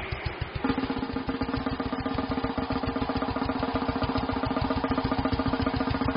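A fast, even drum roll from a church band, with a steady held keyboard note coming in under it about half a second in.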